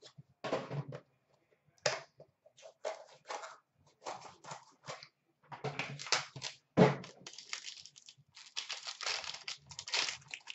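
Trading card box being opened and its plastic-wrapped pack handled: wrapping crinkling and tearing, with cardboard and plastic rustling in irregular bursts. A louder knock comes about seven seconds in.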